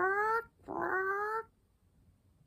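A woman's voice imitating a parrot's squawk: two drawn-out calls, each slightly rising in pitch.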